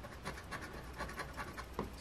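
Edge of a lottery scratcher coin scraping the latex coating off a scratch-off ticket in faint, irregular short strokes.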